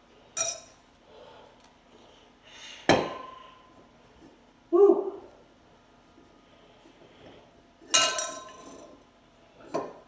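Glass wine bottle handled and set down on a table: a few separate clinks and knocks, the loudest about three seconds in and again about eight seconds in, each with a brief glassy ring.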